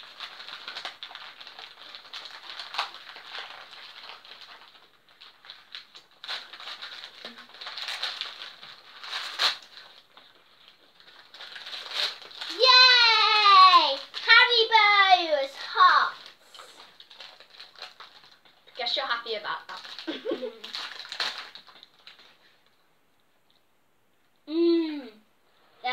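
Paper and plastic wrapping crinkling and tearing as packets are unwrapped, a scratchy rustle with small clicks. About halfway through, a child's high voice calls out in loud tones that fall in pitch for a few seconds, with softer voice sounds after it.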